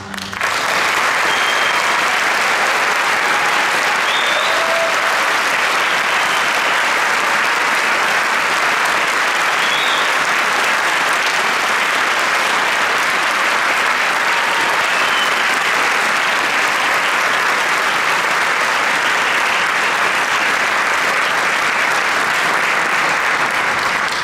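Concert hall audience applauding steadily and loudly at the end of an orchestral piece, the clapping taking over as the orchestra's last chord stops.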